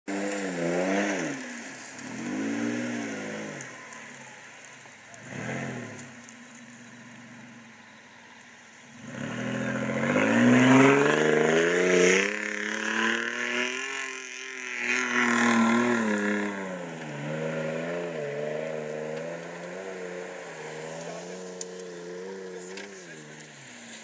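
Off-road 4x4 engine under load on a muddy hill climb: short revs at first, then a long hard pull, rising and falling in pitch and loudest midway, settling to a steadier lower note near the end.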